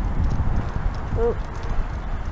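Wind buffeting the camera microphone as a steady low rumble, with footsteps on a paved sidewalk.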